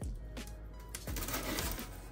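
A large cardboard box being gripped and turned on a table: a couple of light knocks at the start, then a short rough scrape of cardboard about a second in. A soft music bed plays underneath.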